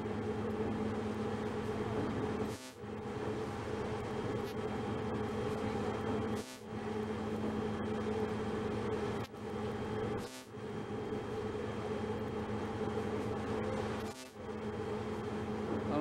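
Steady shipboard machinery hum from a Coast Guard cutter, a drone with several fixed pitches over a noisy bed, dipping briefly about every four seconds.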